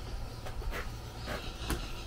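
A few short knocks and light scrapes of cardboard picture-frame mats being picked up and handled, over a low steady hum.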